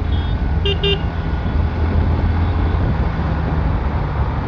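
Bajaj Pulsar NS125's single-cylinder engine running steadily under way, with a rush of road and wind noise. Two short horn toots close together just before a second in.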